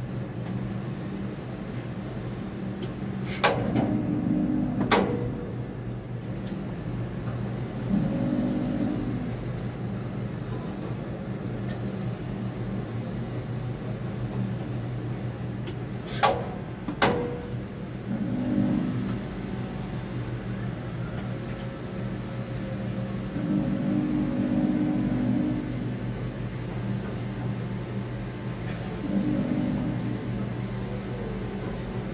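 Tower crane cab hum, steady throughout, with the crane's drive motors running up louder for a second or two about five times as the concrete bucket is positioned over the shaft. Two pairs of sharp clicks cut in, a few seconds in and again about a third of the way through.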